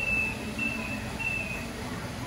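Robotic floor scrubber sounding a repeated high beep, three short beeps about 0.6 s apart, each dipping slightly in pitch at its end, over a steady low machine and room noise.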